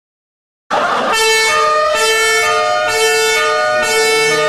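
Amateur wind band playing sustained chords that cut in suddenly about a second in, with a slow rising pitch glide over the held notes and a falling glide near the end.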